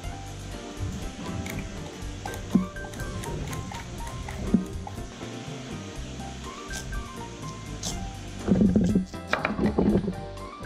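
Background music plays throughout. Two short knocks of a blade on a wooden cutting board come at about two and a half and four and a half seconds in, and there is a louder stretch near the end as the green papaya is cut open.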